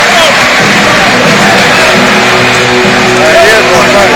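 Music over a sports-hall public address system, with a steady bass line coming in about half a second in, over the noise and voices of a crowded basketball hall.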